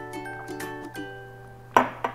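Light background music, then near the end a single loud clunk as a glass of milk is set down on a stone countertop.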